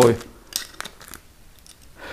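A few light clicks and rustles from handling a metal soft-close cabinet hinge in its plastic packaging.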